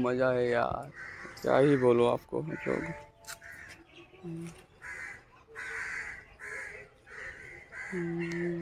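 A man's voice calls out twice in long, wavering cries within the first two seconds; these are the loudest sounds. From about four seconds in, birds call repeatedly, about one short call every half second to second.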